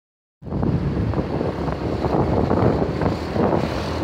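Wind buffeting the microphone over the rumble of a moving vehicle on the road, starting abruptly about half a second in.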